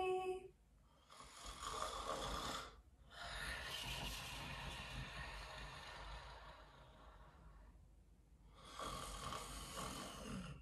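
A woman's mock snoring as she pretends to fall asleep: slow, noisy breaths, one long one fading out, with short pauses between them. A sung note ends just as it begins.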